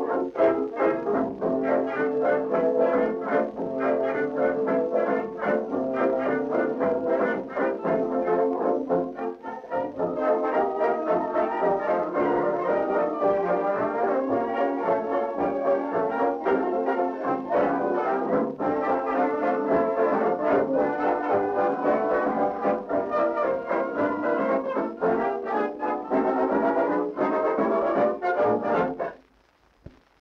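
Electrically recorded 1929 dance-band medley played from an 8-inch 78 rpm shellac record, the band playing instrumentally with brass prominent and a brief break about nine seconds in. The music ends about a second before the close as the side finishes.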